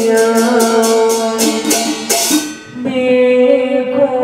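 Vietnamese funeral ritual music: a sustained, slowly stepping melody line, with chant-like singing, played over quick sharp percussion strikes at about three to four a second. The strikes crowd into a roll about two seconds in, there is a short break, and the held melody starts again near the end.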